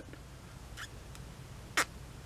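Quiet room tone with a faint click, then one brief sharp squeak near the end that drops quickly in pitch.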